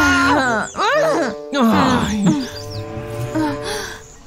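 A woman's wordless wail, rising and falling in pitch in two stretches during the first half, over background music.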